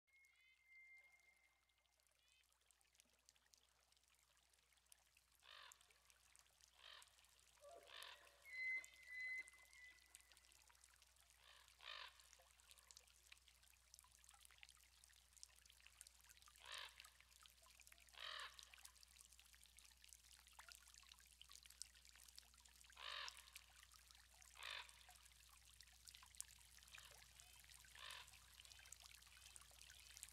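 Faint, distant bird calls: about ten short harsh calls, spaced one to several seconds apart, over near silence.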